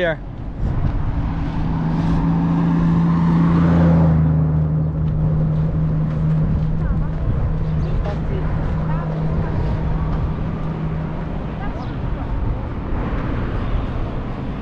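Road traffic beside a roadside walk: a vehicle's low, steady engine hum and tyre noise swell to loudest about four seconds in, then slowly fade away.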